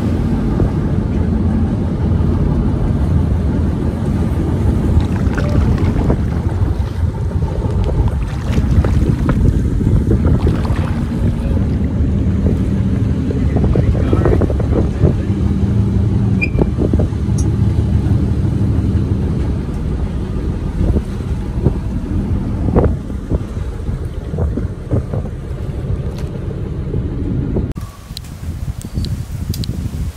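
Motorboat engine running steadily with a low hum, with wind noise on the microphone; the engine sound cuts off shortly before the end.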